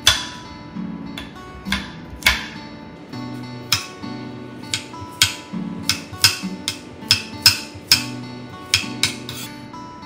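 Chef's knife chopping fresh garlic on a cutting board: sharp, irregular taps, about one to two a second, over background acoustic guitar music.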